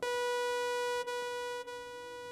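Synthesizer sounding a single held sawtooth-wave note near 490 Hz, bright and buzzy with a full ladder of overtones. It starts abruptly and drops a little in level about a second in.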